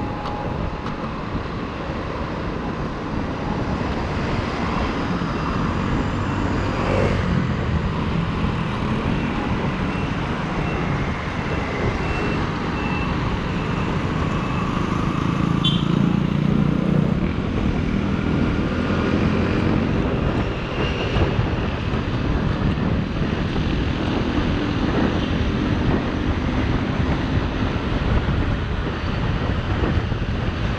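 Kymco Like 125 scooter's single-cylinder four-stroke engine running while riding, mixed with steady road and traffic noise.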